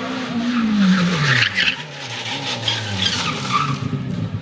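Rally car on a tarmac stage: the engine note falls in pitch through the first second and a half as the car comes into a bend, with its tyres squealing on the asphalt. The engine note climbs again about two and a half seconds in.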